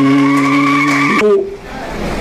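A man singing one long held note into a microphone, which cuts off about a second in and is followed by a short stretch of noise.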